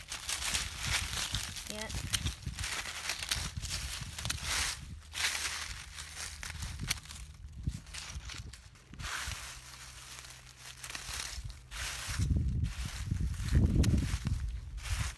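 Scissors snipping through dry, dusty strawberry leaves, with irregular crackling and rustling of the dry foliage and plastic mulch as the plants are cut and handled. A low rumble builds near the end.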